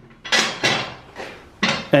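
A steel mower discharge chute clanking against a metal mower deck as it is handled into position: a few sharp metallic knocks, each fading quickly.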